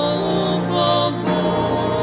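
Women's church choir singing a gospel song into microphones, with sustained held notes; the notes change a little past the middle.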